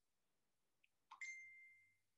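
A single ding about a second in: one clear ringing tone that fades away within about a second.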